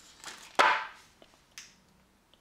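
Handling noise from a model locomotive and its packing being picked up and worked by hand: one sharp rustle about half a second in, and a fainter one about a second later.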